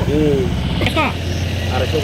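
A steady low engine hum, like a small motor idling, runs under a few short spoken words.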